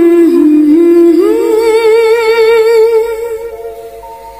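A woman's wordless humming over the held chords of a film song's backing music: the melody rises about a second in, holds a long wavering note, and fades near the end.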